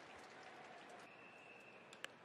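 Faint ballpark crowd ambience between pitches: a low, steady hiss of crowd noise, with a thin high tone heard briefly in the second half.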